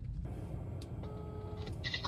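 Low steady rumble inside a Renault car's cabin, with a short electronic tone lasting about half a second, a second in.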